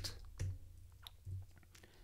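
A few faint, separate computer keyboard keystrokes as the coder moves the cursor in a text editor.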